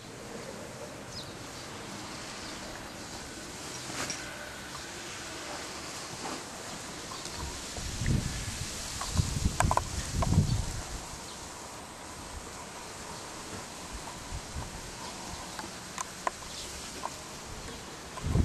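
Steady outdoor background hiss, with a run of low bumps and rustling about eight to ten and a half seconds in from the camera being handled as it is turned to the sky.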